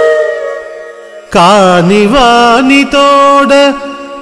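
A held flute-like note fades out, then about a second in a solo voice starts singing a line of a Telugu verse to a Carnatic-style melody, the notes gliding and wavering, with a short break partway through.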